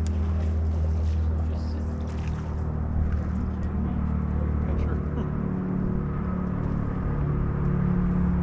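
Steady low hum of a bass boat's bow-mounted electric trolling motor moving the boat slowly along the docks, its pitch stepping up a little about halfway through.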